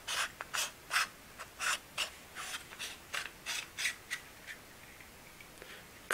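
A 52 mm Kenko Pro1 protector filter being screwed by hand onto the front thread of a Panasonic Lumix G Vario 14-45mm lens. The threads rub in short strokes with each twist, about three a second, stopping about four and a half seconds in.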